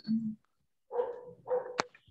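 A dog barking twice, coming through a participant's open microphone on the call, each bark about half a second long, with a sharp click right after the second.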